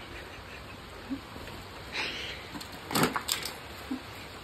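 A few brief swishes and snaps of wet clothing being yanked off a clothesline, one about two seconds in and a sharper pair around three seconds.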